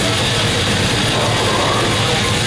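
Extreme metal band playing live and loud: heavily distorted guitar and drums merge into a dense, unbroken wall of sound.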